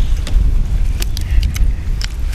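Wind buffeting the microphone in a loud, steady low rumble, with a few sharp, crisp clicks of a fresh lettuce leaf being bitten and chewed.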